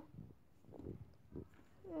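Quiet room with a few faint soft sounds, then a child's hummed "mm" starting just before the end.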